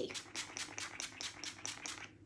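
Pump mister of a Mario Badescu facial spray bottle pumped rapidly, about five short hissing sprays a second.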